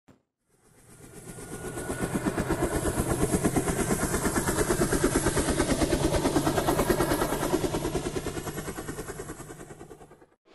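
Intro sound effect: a fast, even mechanical pulsing, about a dozen beats a second, over a steady low hum. It fades in over the first two seconds and fades out toward the end.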